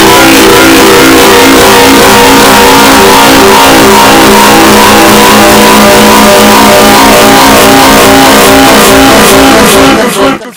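Thousands of stacked copies of a cartoon song clip with guitar, merged into one continuous, clipped, distorted wall of sound. Several steady pitches are held under a roar of noise, with no break or change in loudness.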